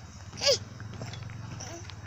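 A young child's brief high-pitched squeal, falling quickly in pitch, about half a second in, over a steady low rumble.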